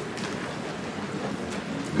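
Steady room noise through the podium microphone, with a few faint knocks and rustles as the microphone and podium are handled.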